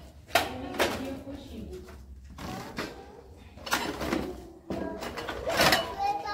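Two sharp clinks of plates being handled in the first second, with children's and adults' voices around them.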